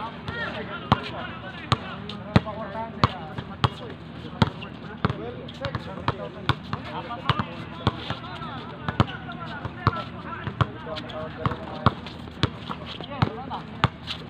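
Basketball dribbled on a hard outdoor court, a sharp bounce at a steady pace of about three every two seconds, with players' voices in the background.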